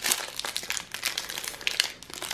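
Foil wrapper of a Panini Adrenalyn XL trading-card booster pack crinkling in the fingers as it is handled at the seal, in irregular crackles.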